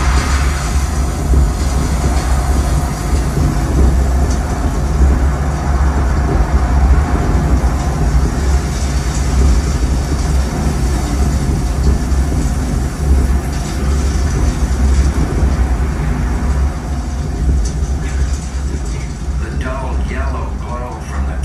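Recorded dust-storm sound effect: a loud, steady roar of wind with a deep rumble, easing slightly near the end.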